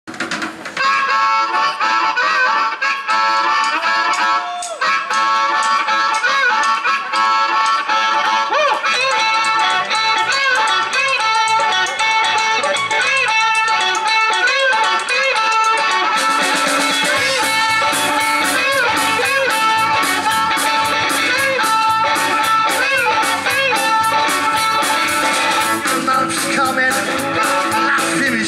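Live rock'n'roll band playing an instrumental intro: electric guitar and harmonica lead, bass coming in about a third of the way through, and the drums and full band entering a little past the middle.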